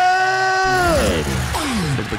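A man's amplified voice holds one long, high shout and then slides down in pitch: a drawn-out hype call from the battle MC over the venue sound system. Deep, pulsing bass music comes in underneath about halfway through.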